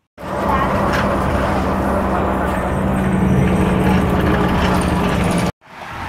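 Motor vehicle running steadily: a continuous low hum with road noise, cutting off suddenly near the end.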